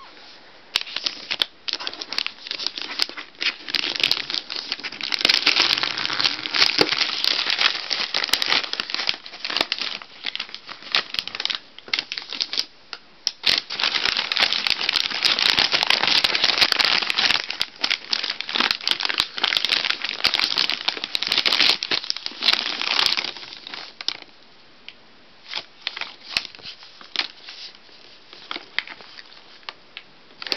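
Shiny foil-finish wrapping paper on a present crinkling and tearing as it is pulled open, a dense run of crackles with a brief pause about halfway. It thins to scattered crackles over the last few seconds.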